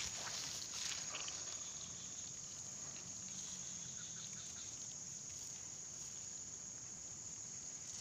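Steady, faint, high-pitched insect chorus, like crickets, droning without a break.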